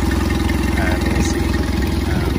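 Mercury 8 hp four-stroke two-cylinder outboard engine running steadily on a garden hose, its water pump flowing cooling water out of the telltale.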